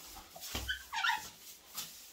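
Broom bristles swept across a tiled floor in short strokes, and a little after the start a brief high-pitched, wavering whimper, the loudest sound here.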